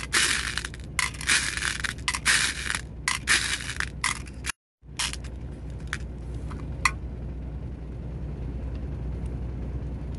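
8 mm agate beads rattling and clattering against a glass bowl as a hand stirs and scoops through them, in quick bursts for about four and a half seconds. After a brief dropout, a few single beads click as they are set into a small clear container, then only a low steady background hum remains.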